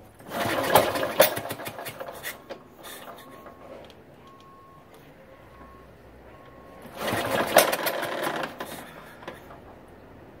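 1954 Ariel NH 350cc single-cylinder four-stroke motorcycle engine being kick-started, with no rider talk over it. It is kicked twice, about seven seconds apart. Each kick gives a burst of mechanical clatter lasting about two seconds that dies away, and the engine does not keep running.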